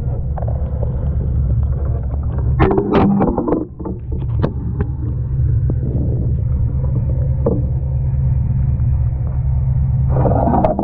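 A boat's engine running steadily as a low, even rumble, heard muffled through a camera housing. A cluster of knocks and splashing comes about three seconds in as the wearer climbs out of the water onto the deck, with a few single knocks later.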